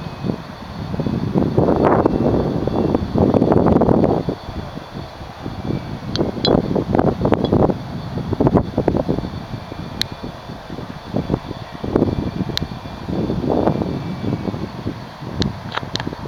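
Wind buffeting the microphone in irregular gusts, with a few short sharp clicks.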